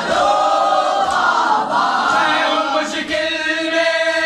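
A chorus of men chanting a Muharram noha together in long, held notes. A few sharp slaps about a second apart cut through, the chest-beating of matam.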